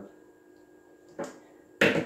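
Quiet room tone with faint steady tones, broken by a short click a little over a second in and a louder, sharper click near the end.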